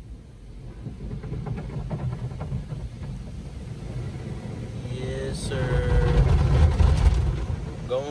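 Automatic car wash spraying water and foam onto an SUV, heard from inside the closed cabin: a rushing wash noise that builds steadily louder and is heaviest about six to seven seconds in.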